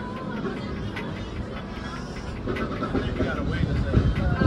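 Busy outdoor ambience: faint voices and music over a steady low rumble, with the voices coming up in the second half.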